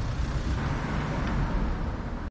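Road traffic noise: a steady rumble and hiss of cars on the street.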